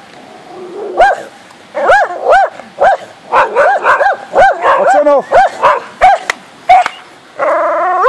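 Several dogs barking and yipping in quick, repeated short barks at a fox they have spotted.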